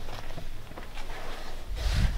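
Rustling and bumping of a hand-held camera being moved about, a noisy hiss with a low thump near the end.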